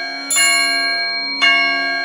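Bell tones struck twice, about a second apart, each ringing on and slowly fading, over a steady low drone in the music.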